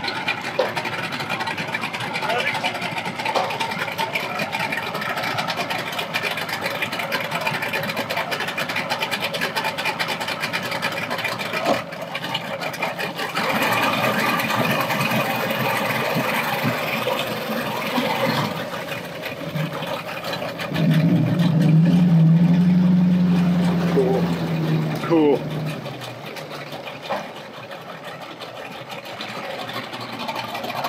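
200-horsepower Mercury outboard motor on a small speed boat running, with a steady low engine note that is loudest for a few seconds past the middle, then fading.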